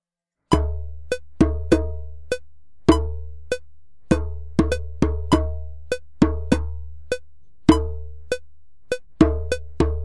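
Playback of a recorded djembe rhythm: sharp hand strokes, many with a deep low boom ringing under them, starting about half a second in. A few strokes land slightly ahead of or behind the beat.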